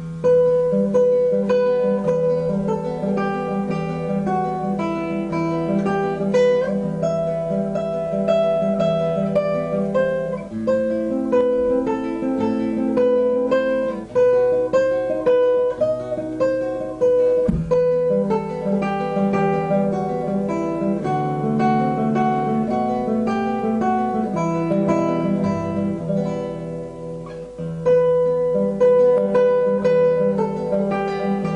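Instrumental music on acoustic guitar: a plucked melody over a repeating bass line, starting suddenly at the beginning.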